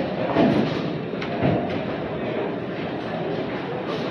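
Bowling alley din: a steady rumble of balls rolling down the lanes, with a few scattered knocks.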